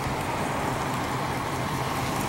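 Steady motor-vehicle noise: an even low rumble with a faint constant hum, unchanging throughout.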